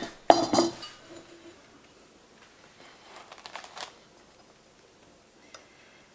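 Kitchen utensils handled at a wooden cutting board: a sharp clink with brief ringing just after the start, then faint scraping about three seconds in.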